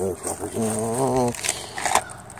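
A man's wordless vocal sound, a drawn-out hum or groan held at one pitch for just under a second.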